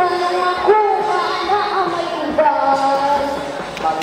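A girl and a boy singing a duet into handheld microphones over recorded backing music, with long held notes.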